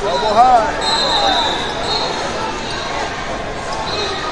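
A few short squeaks, rising and falling, in the first second, typical of wrestling shoes on the mat. They sit over the steady chatter of a crowded hall, with a faint high steady tone running through.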